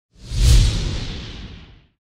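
Whoosh sound effect with a deep rumble under it, accompanying a logo intro animation. It swells in quickly, is loudest about half a second in, then fades out over the next second and a half.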